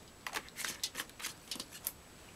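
Thin plastic vegetable-oil bottle crackling in the hand as oil is poured from it and the bottle is tipped back up: a quick, irregular string of light crackles.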